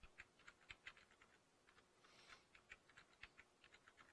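Faint typing on a computer keyboard: quick, irregular key clicks with a brief lull partway through.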